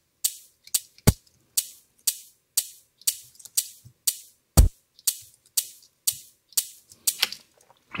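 Programmed drum loop of crisp, rattly percussion hits, about two a second, built from sampled vegetable gore sounds (squelches, snaps) played in a drum sampler. A deep kick lands about a second in and again past the halfway point.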